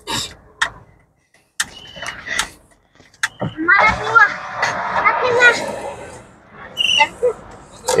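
Indistinct voices talking, densest in the middle of the stretch. A few short, sharp clicks come in the first three seconds.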